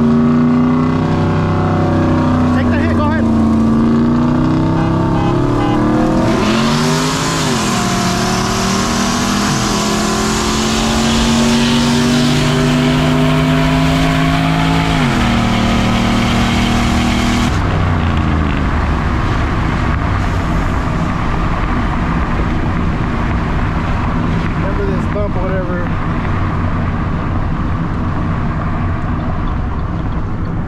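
Pickup truck's V8 at full throttle in a roll race, heard from inside the cab: the engine pitch climbs and falls back at each upshift. A loud rushing hiss joins in about a fifth of the way through, and both cut off suddenly about halfway through as the engine drops back. After that it runs on steadily with road noise.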